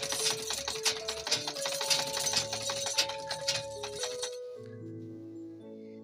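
South China treadle sewing machine running with a rapid clatter while a bobbin held on a seam ripper spins against the handwheel, winding thread; the clatter stops about four seconds in. Background music with held notes plays under it.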